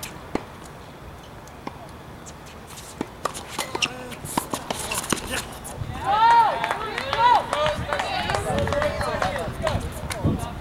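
Tennis ball struck back and forth with rackets on a hard court, a string of sharp pops over the first few seconds. From about six seconds in, several voices shout and cheer as the point ends.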